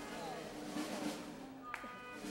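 Indistinct voices over sustained musical tones, with a single sharp tap near the end.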